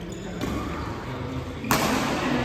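Badminton rackets striking a shuttlecock during a rally: a lighter hit about half a second in, then a sharp, much louder hit near the end that rings on in the hall.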